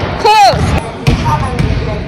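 A basketball bouncing a few times on a hardwood gym floor, the bounces about half a second apart, with a short falling squeak of a sneaker on the floor near the start.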